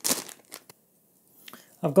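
Brief crinkle of a small plastic bag being handled, followed by a couple of faint clicks and then a short silence.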